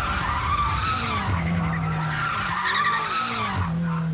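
BMW M5's twin-turbo V8 revving hard as the car drifts, its pitch rising and falling several times, with the rear tyres squealing and smoking on the tarmac.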